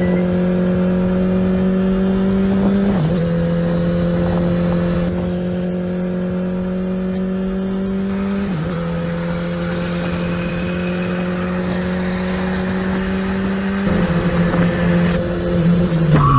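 Commuter motorcycle engine running steadily as the bike rides along, its pitch climbing slowly. The pitch dips briefly twice, about three and about eight and a half seconds in.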